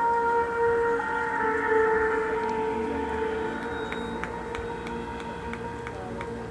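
Marching band playing long held chords that shift about a second in and slowly grow quieter, with a few light percussion ticks in the second half.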